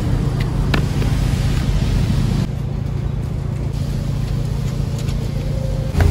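Road traffic with a car engine running close by, a steady low rumble, with a couple of light clicks within the first second; it turns a little quieter and duller about halfway through.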